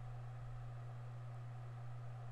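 Faint steady low hum with a light even hiss: background room tone, with no distinct event.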